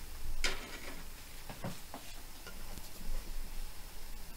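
Glass bowl set down on a dial kitchen scale: one light knock about half a second in, then a few faint clicks and handling sounds.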